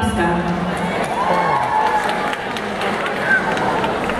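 Auditorium audience: crowd chatter with voices calling out over it, and a few sharp claps.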